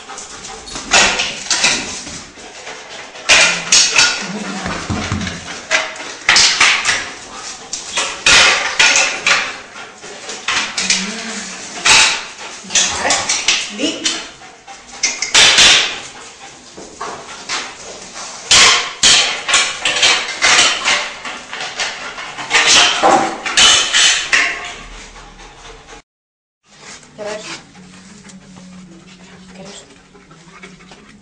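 A dog barking repeatedly in a bare, echoing room, with a person's voice among the barks. There is about one loud bark every second or so, and they stop a few seconds before the end.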